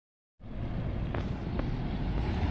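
Low, steady rumble of a UPS natural-gas delivery truck's engine idling, with some wind on the microphone.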